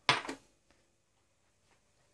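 Small glass dropper bottle set down on a granite countertop: a short knock at the start, with a lighter second tap right after.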